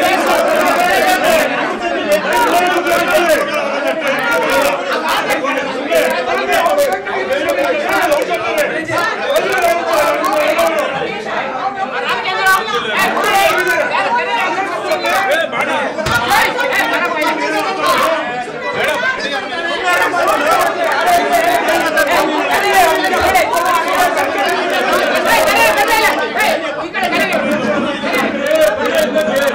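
A crowd of people arguing loudly, many voices talking and shouting over one another at once in a jostling scuffle.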